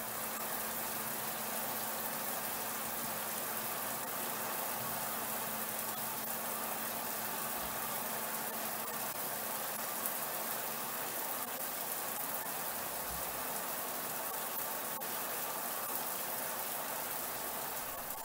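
Mira Advance ATL thermostatic electric shower running on full cold, water spraying steadily from the shower head into the cubicle, with a faint steady hum underneath. This is its post-installation commissioning run.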